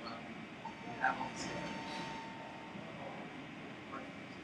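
Indistinct background voices and room noise, with one sharp knock about a second in and a faint thin steady tone lasting about two seconds.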